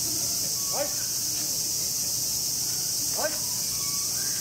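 A steady, high-pitched chorus of summer cicadas, with two short rising calls, one about a second in and one near the end.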